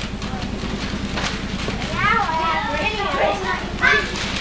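Children's high voices calling and chattering outdoors, with bursts in the middle and just before the end, over a steady low hum.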